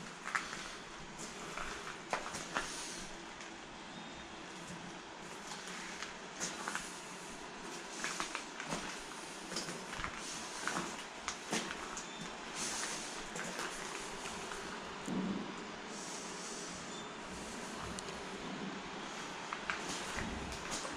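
Footsteps and scuffs on rock and rubble along a stone tunnel floor, heard as scattered irregular clicks and knocks over a steady hiss.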